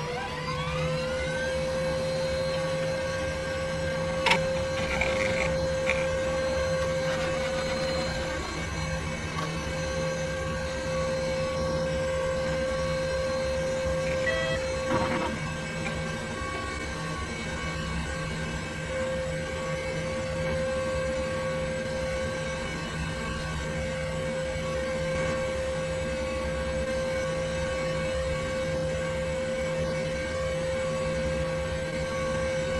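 Desktop computer powering up: its fans and drive spin up during the first second into a steady whine over a low hum. A few short clicks break in a few seconds in and about halfway.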